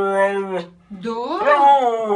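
Siberian husky howling and "talking": a long, level howl that falls and breaks off just over half a second in, then after a short pause a howl that rises and falls in pitch and settles back into a held note near the end.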